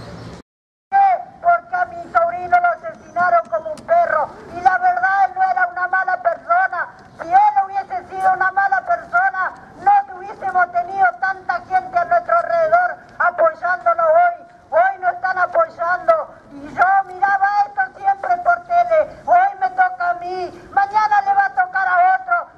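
A voice speaking continuously through a handheld megaphone, with a narrow, harsh horn tone. It starts after a brief gap just under a second in.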